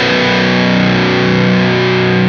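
Vola Vasti KJM J2 semi-hollow electric guitar on its bridge and middle pickups, humbuckers coil-tapped, played through distortion: one chord held and ringing steadily.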